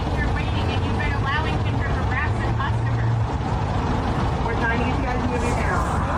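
Steady low rumble of a car idling, with a person's voice talking over it.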